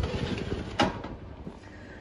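Metal baking tray scraping as it slides into an oven, with a single sharp knock just under a second in.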